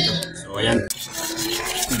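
Hands rubbing and scrubbing bayuko land-snail shells against each other, a dry, scratchy rasping that builds up about a second in, to clean the moss off them.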